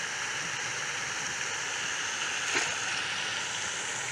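Steady, even hiss of flowing river water, with one brief faint blip about two and a half seconds in.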